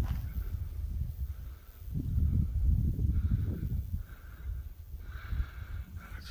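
Wind buffeting a phone microphone in uneven low gusts, with a hiker breathing hard, out of breath from the climb.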